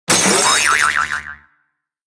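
A cartoon boing sound effect: a wobbling, warbling tone that fades out after about a second and a half.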